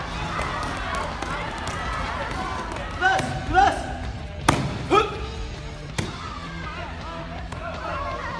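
Two sharp cracks of kicks striking a handheld paddle target, about four and a half and six seconds in, amid hall chatter and a few short shouts.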